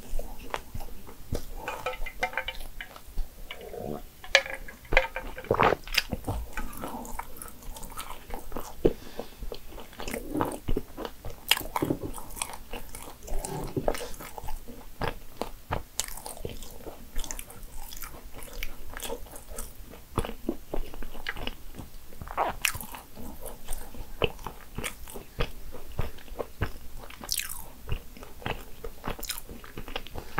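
Close-miked chewing of a nut-filled financier: the nut pieces crackle and crunch between the teeth in quick irregular bites, with soft wet mouth sounds in between.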